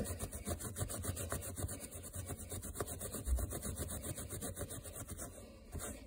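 A microfiber towel rubbed quickly back and forth on carpet pile, scrubbing a paint spot out of the fibers with a steady scratchy rhythm that eases off near the end. A dull low bump comes about halfway through.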